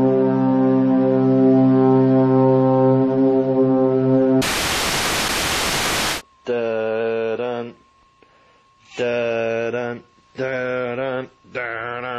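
A sustained brass-like chord in the music, then about two seconds of loud TV static hiss about four seconds in. After that a cat yowls in four long, drawn-out meows with short gaps between them.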